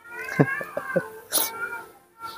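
Baby monkey crying: one long call that rises and falls over about a second, then a short sharp squeal.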